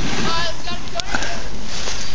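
Wind rushing over the microphone and the scrape of a board sliding over packed snow while riding downhill, with a short knock about a second in.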